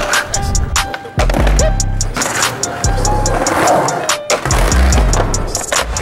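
Skateboard rolling on concrete with sharp clacks and knocks of the board, laid over music with a deep bass pulse and a quick ticking beat.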